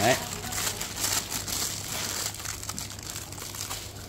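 Thin clear plastic bag crinkling and rustling as hands unwrap a chrome faucet fitting: a run of irregular crackles that thins out toward the end.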